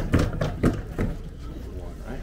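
Indistinct talk of people close by, with a quick run of about four short, sharp knocks or slaps in the first second.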